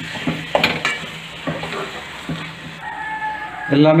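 Steel spoon stirring onion and tomato masala frying in a metal pan: a steady sizzle with several sharp scrapes and knocks of the spoon against the pan in the first couple of seconds. A brief steady high tone sounds about three seconds in.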